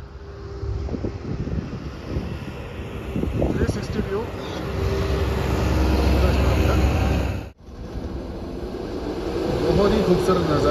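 Vehicle engine running with wind and road noise, as heard from a moving vehicle on a mountain road. The rumble swells in the middle and breaks off abruptly about three-quarters of the way through before resuming.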